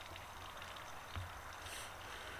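Faint steady outdoor background hiss, with a soft low bump about a second in and a brief, faint breathy hiss near the end as a puff of heated-tobacco smoke is breathed out.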